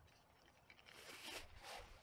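Faint rustling of a packed tarp's fabric stuff sack being handled, soft scuffs coming and going.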